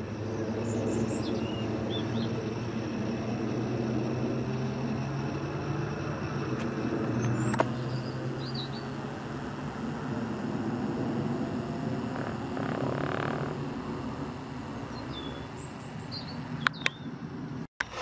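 A steady low mechanical hum, easing off in the last few seconds, with a few faint bird chirps and a couple of sharp clicks.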